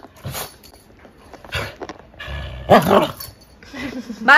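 Small white spitz-type dog giving a few short barks, the loudest about three-quarters of the way through.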